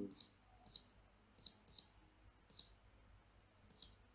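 Faint computer mouse button clicks, about seven of them at uneven intervals, most heard as a quick press-and-release double tick, as lines are selected one at a time in a drawing program.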